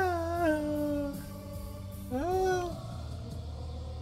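A male voice holding two long sung notes: the first steps down in pitch and ends about a second in, the second swoops up about two seconds in and is held briefly. A steady low hum runs underneath.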